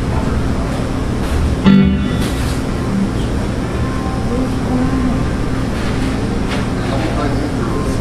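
Live band instruments sounding through the PA in a bar, with crowd chatter, and a single loud thump about two seconds in.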